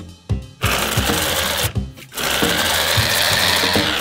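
Cartoon electric juicer motor whirring and grinding in two runs: a short one about half a second in, then a longer, louder one from about two seconds in. The machine is overloaded with whole lemons and straining to the point of smoking.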